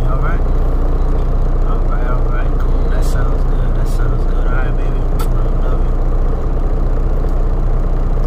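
Steady low drone of a semi-truck's engine heard inside the cab, with faint talking over it.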